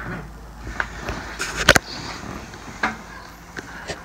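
Rubber mask being handled and stretched open: rubbing and rustling with scattered sharp clicks, the loudest a quick cluster about a second and a half in.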